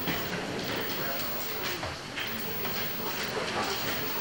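Papers being handled and rustled close to a table microphone, in a few short rustles, over low background murmur of voices in a meeting hall.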